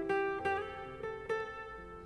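Quiet background music: a guitar picking a few slow single notes that ring and fade.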